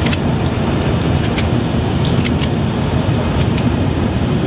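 Steady low rumble of idling vehicles, with a few sharp clicks scattered through, several of them in close pairs.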